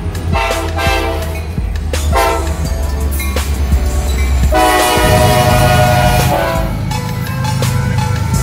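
Diesel freight locomotive air horn sounding a chord in several short blasts, then one long blast, over the low rumble of a passing train.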